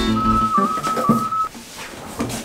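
A person whistles one held high note over the last of an acoustic guitar's chord. The guitar dies away about half a second in, and the whistle stops about a second and a half in.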